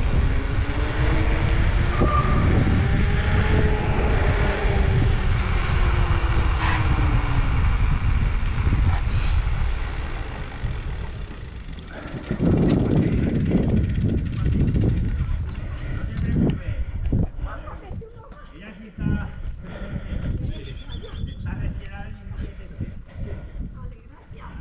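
Mountain bike rolling fast down a paved street: wind rushing over the camera and the knobby tyres humming on the asphalt, the hum rising and then falling in pitch over the first several seconds. There is another loud rush around the middle, then the noise drops away to a lower, uneven rolling sound with scattered clicks as the bike slows to a stop.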